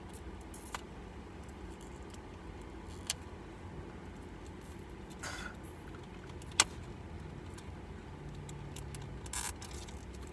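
Handling of a small cardboard product box during unboxing: a few sharp clicks, the loudest about six and a half seconds in, and brief rustles, over a low steady rumble.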